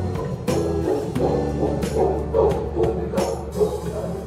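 Music with held pitched notes and a regular percussive beat.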